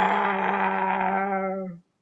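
A woman imitating a lion's roar with her voice: one long roar held at a steady pitch, which cuts off near the end.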